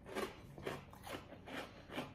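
Someone chewing a crunchy snack mix of caramel popcorn and cereal pieces: faint crunches about two a second.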